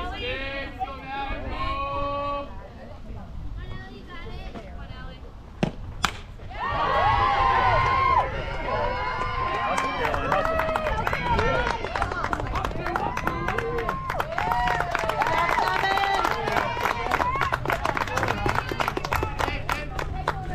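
Voices chatting at a softball game, then a sharp crack of a bat hitting a softball about six seconds in, followed by a second crack. Many voices then start shouting and cheering at once, with clapping.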